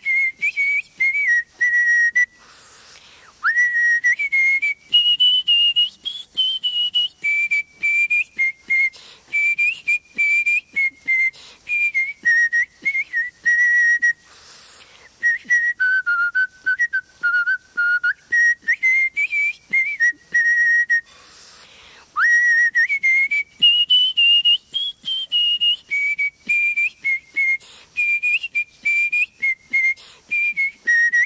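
A single person whistling a melody of short, clear notes that step up and down. It breaks off twice for about a second, about two seconds in and again past the twenty-second mark, and each time comes back in with an upward swoop.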